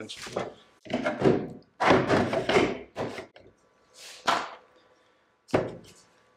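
A series of clunks and knocks, about six in all, as gear is handled on an aluminium dinghy and a plastic tray is fitted onto its gunwale; the last knock comes just before the end.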